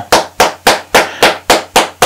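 A run of about eight sharp, evenly spaced percussive strikes, roughly four a second, each fading quickly.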